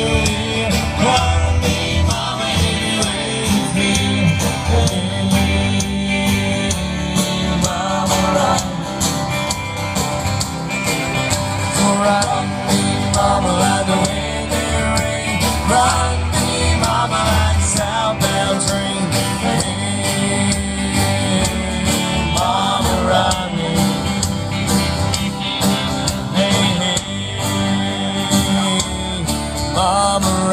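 Country band playing live: a drum kit keeping a steady beat under acoustic and electric guitars.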